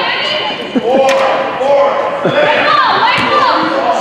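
Voices calling out in a gym, drawn-out and unclear, with a couple of sharp knocks about a second in.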